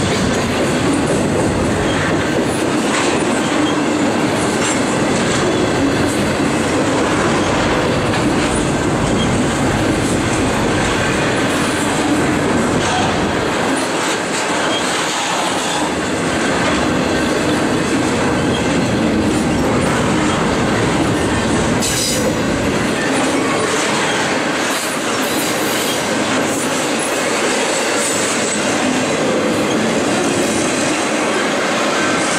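An intermodal freight train's cars rolling past close by: a steady, loud rumble of wheels on rail with repeated clicks over the rail joints and some metallic wheel squeal.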